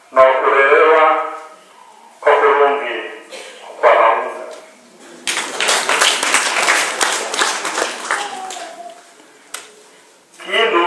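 A man speaking in short phrases over a microphone, then about five seconds in a burst of clapping from many hands that lasts about three seconds.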